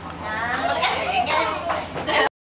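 Young children's voices chattering and calling out in high, bending tones, over a steady low hum.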